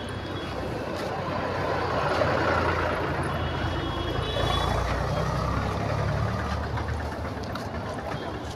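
Street traffic: the low engine rumble of heavy vehicles moving along the road, swelling a couple of seconds in and easing near the end, with a faint high tone briefly in the middle.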